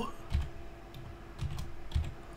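Computer keyboard being typed on: several separate keystrokes, unevenly spaced, over a faint steady hum.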